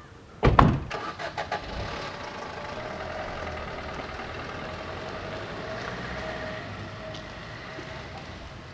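Maruti Suzuki Ertiga's doors slamming shut, a loud thump about half a second in followed by a few lighter knocks, then the car's engine running steadily as it pulls away.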